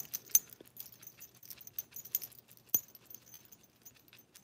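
Small metal dog-collar tags jingling in light, irregular clinks as the dog moves or scratches at its collar.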